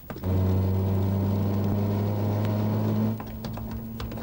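A loud, steady low-pitched tone starts just after the beginning and cuts off about three seconds in, leaving a quieter, slightly higher tone. Sharp clicks from the horse cart return near the end.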